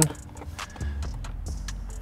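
Small, sharp plastic clicks and light rattles, scattered irregularly, as an instrument cluster and its wiring-harness connector are handled and fitted into a car's dashboard.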